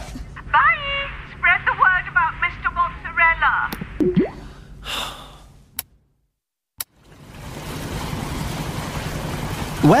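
A voice over a tinny, call-quality line with a low hum under it. Then a couple of clicks and a second of dead silence. After that a steady wash of sea and wind fades in and holds.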